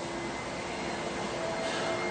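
Steady background noise with a faint hum and a few faint steady tones, unchanging throughout: room tone.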